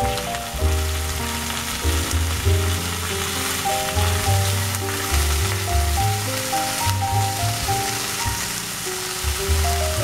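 Pork cutlets sizzling steadily in oil in a nonstick frying pan, with piano music playing throughout.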